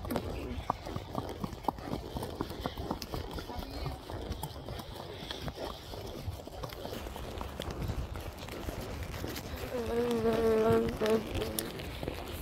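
Horses' hooves clip-clopping in an uneven patter as they walk along the road, over a low rumble of outdoor noise on the phone's microphone. A voice sounds briefly about ten seconds in.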